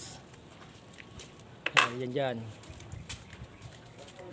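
A brief word or call from a person, with a sharp knock at its start about two seconds in, over quiet outdoor ambience with a few faint clicks.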